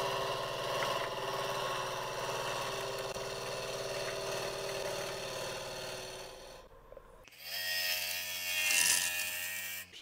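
Wood lathe spinning a natural-edge maple burl blank while a gouge cuts into it, a steady machine hum under the hiss of shavings being torn off during roughing. The cutting stops for a moment about two-thirds of the way through, then a second cutting pass starts and is loudest near the end.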